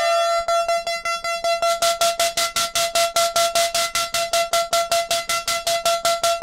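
Moog modular synthesizer voiced through a home-built preset card, playing one bright, buzzy note that repeats rapidly at about seven notes a second at a steady pitch.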